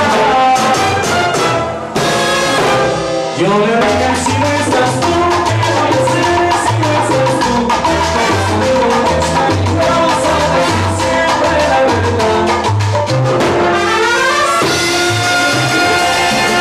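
A live salsa orchestra playing. Timbales, congas and bongó drive the rhythm under piano, bass and a horn section of trumpets, trombone and alto saxophone. The band breaks briefly about two seconds in, then comes back in with a pulsing bass line.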